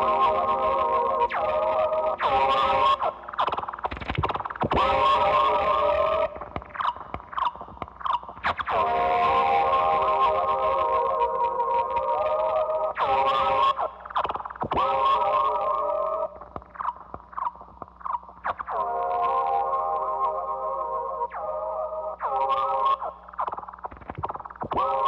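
Electric guitar run through effects pedals, playing an effects-laden drone: a held chord of layered steady tones that swells in three long stretches, broken between them by quick sliding pitch swoops and clicks.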